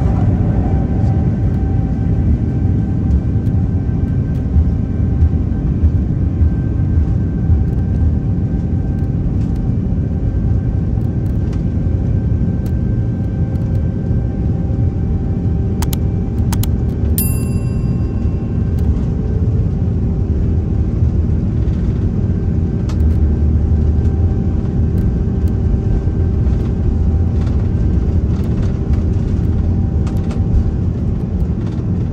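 Airbus A330-900neo's Rolls-Royce Trent 7000 engines at takeoff thrust during the takeoff roll, heard inside the cabin as a loud, steady rumble with a few steady engine tones above it. About halfway through come a couple of clicks and a short, high ringing tone.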